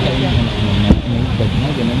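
Indistinct people talking over a steady background noise, with one sharp knock about a second in.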